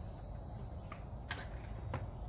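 A few light plastic-and-metal clicks from a stroller wheel and frame being handled as the front wheel is lined up to clip back onto the folded frame: a faint tap, then one sharper click just past halfway, over a steady low background rumble.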